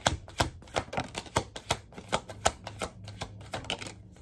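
A deck of tarot cards being overhand-shuffled in the hands, the cards giving a quick, irregular run of sharp clicks, about four or five a second.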